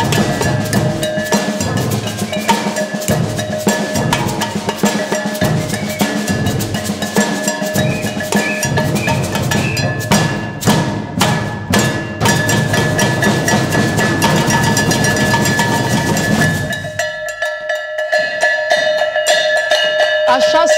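Protest percussion band playing a dense, loud rhythm on improvised instruments: plastic water jugs and a metal pail beaten with sticks, enamel mugs clacked together, with a snare drum and a bass drum underneath. The drumming breaks off near the end.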